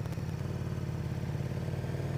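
Motorcycle engine running at a steady speed while riding, a low even hum with no change in pitch.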